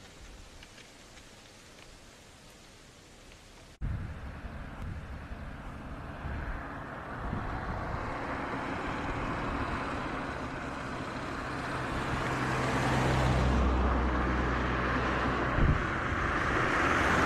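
Faint hiss, then an abrupt cut about four seconds in to outdoor ambience with a motor vehicle's engine running, growing louder toward the end.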